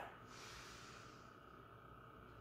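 Near silence: a faint breath, fading out over the first second, over quiet room tone.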